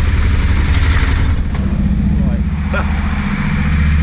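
KTM adventure motorcycle's engine idling steadily, a constant low note under the talk.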